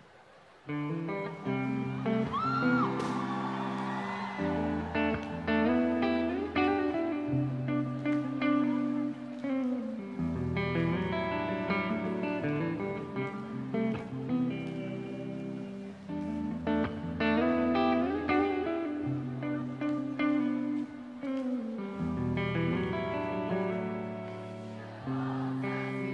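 Instrumental rock song intro on electric guitar, a picked melodic line over long low bass notes, starting about a second in.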